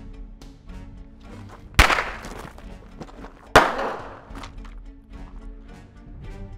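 Two pistol shots, just under two seconds apart, each sharp and loud with a short echoing tail, over dramatic background music.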